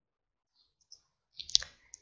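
A few faint computer mouse clicks, the sharpest about one and a half seconds in, as a dropdown list is opened, with a brief soft hiss around them.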